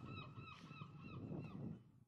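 Faint bird calls: a quick run of short, honking calls, about four a second, fading out near the end.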